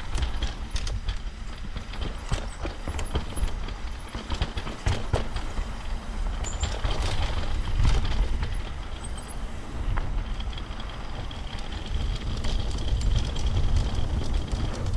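Mountain bike ridden fast down a dirt trail, heard from the rider's camera: tyres crunching over dirt and stones, and the bike rattling with many sharp knocks over the bumps. Wind buffets the microphone, more strongly near the end.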